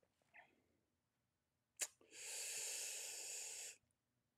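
A short click, then a man's breath of about a second and a half close to the microphone.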